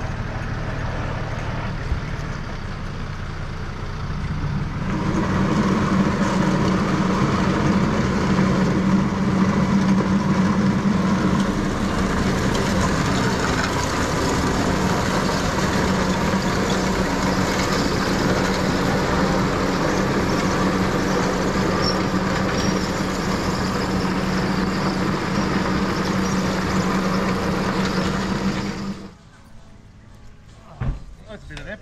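A truck engine running steadily while it tows a recovered car. It gets louder about five seconds in, holds a steady hum, and stops abruptly near the end.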